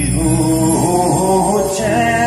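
Live band music with a singer holding a wavering, sliding melody over sustained keyboard chords and a steady bass.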